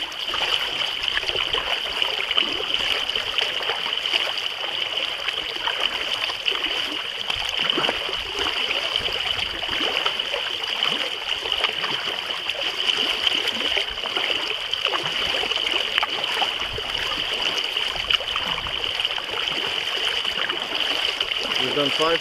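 Choppy lake water splashing and lapping against a small kayak's hull as it is paddled along, a steady run of small irregular splashes.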